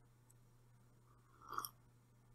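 Near silence: room tone with a faint low steady hum, and one faint brief sound about one and a half seconds in.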